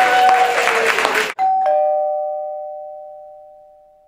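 Live band music with acoustic guitars stops abruptly about a second in. A two-note chime follows, a high note then a lower one, ringing on and fading away slowly.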